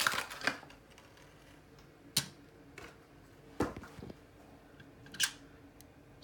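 About five short, sharp clicks and taps, spread over a few seconds with quiet room tone between them. They come from a small die-cast toy car with a plastic base being handled and turned over in the fingers.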